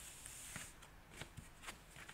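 Tarot cards being slid across a cloth-covered table and laid out in a spread: a soft, faint brushing hiss in the first half second or so, then a few light taps as cards are set down.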